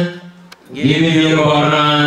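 A single man's voice chanting in long, steadily held notes. One phrase ends just after the start, and a new held phrase begins just under a second in.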